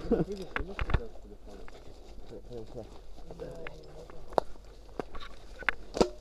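Footsteps on a dirt path with several scattered sharp clicks, over faint voices in the background.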